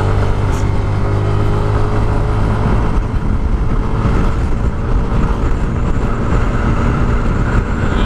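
Stock Yamaha NMAX scooter's single-cylinder engine at full throttle under hard acceleration, its note holding a nearly steady pitch as the CVT lets road speed climb. Heavy wind rush on the microphone.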